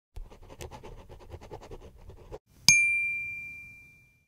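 A pen-scribbling sound effect, a quick run of short scratchy strokes for about two seconds. Then a single bright chime ding, the loudest sound, rings out and fades.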